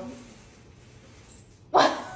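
A woman's single short, loud burst of laughter near the end, after a quiet pause.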